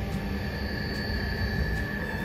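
Cabin running noise of the Tågab X10 electric multiple unit under way: a steady low rumble, with a steady high whine that comes in about half a second in.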